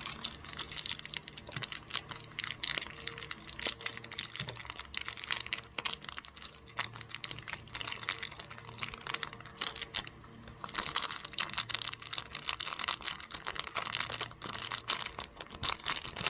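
Foil food pouch crinkling as it is squeezed and handled: a dense, irregular run of sharp crackles.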